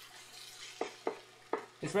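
Wooden spatula stirring fried rice in a hot skillet: a faint steady sizzle with three short scrapes of the spatula against the pan.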